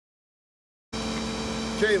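Silence, then about a second in a tow truck's running power take-off (PTO) cuts in: a steady high-pitched whine over the engine idling.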